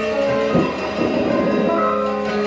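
Free-improvised music from keyboard with electronics, electric guitar and drums. Several sustained pitched tones are layered together, and a dense, grainy cluster of sound swells in about half a second in and fades after about a second.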